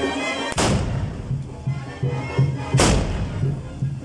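Two loud black-powder musket shots, about two seconds apart, each with a long ringing tail, fired over band music with a steady beat.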